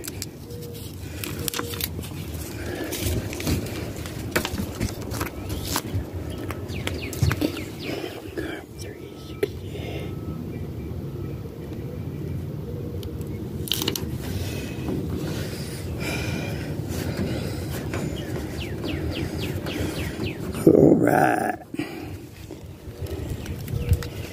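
Paper and vinyl crinkling and rustling as a sticker's backing is peeled off and the sticker is rubbed down onto the wall of a pontoon boat. Many small clicks and rustles sit over a steady low rumble, with a louder rub about 21 seconds in.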